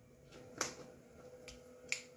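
Two light, sharp metallic clicks about a second and a quarter apart, from small ball bearings and washers being picked up and slid onto a screw to build an idler stack, with a few fainter ticks between.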